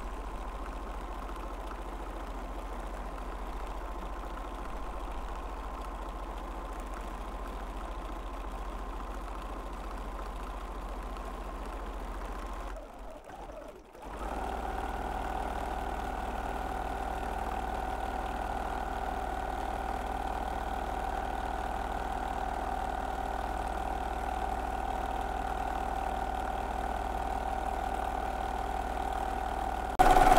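Bernina domestic sewing machine running steadily while free-motion quilting through a quilt. The motor stops briefly about halfway through, then starts again a little louder and at a lower pitch.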